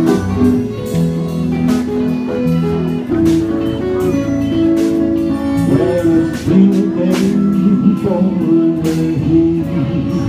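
Live jam of strummed guitars with a harmonica and a man singing.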